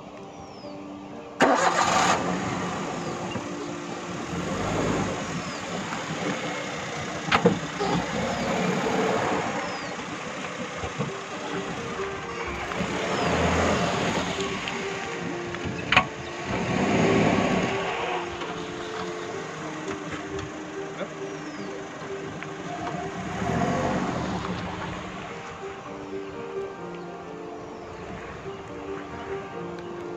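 Suzuki Wagon R hatchback starting up with a sudden loud burst about a second in, then driving off, passing close and pulling away, its engine rising and falling several times. Background music runs underneath.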